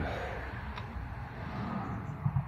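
Quiet, steady background noise with no distinct event, apart from one faint click about three quarters of a second in.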